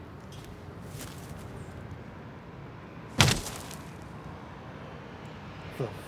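A single sudden heavy thud about three seconds in that dies away within half a second, over a steady low outdoor background hiss.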